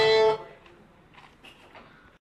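Violin playing a held note that stops abruptly about a third of a second in, then quiet room sound with a few faint, scattered noises.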